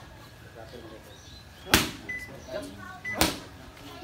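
Boxing gloves smacking into focus mitts during pad work: two sharp punches landing, a second and a half apart.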